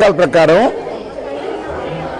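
A man speaking for a moment, then the steady background chatter of people in a large room.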